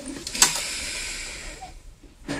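A sharp mouth click about half a second in, then a soft breath hissing through the microphone that fades over about a second: the preacher drawing breath in a pause between sentences.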